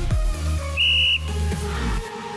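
A short, steady, high-pitched whistle blast of about half a second, a little under a second in, over electronic dance music with a heavy bass beat.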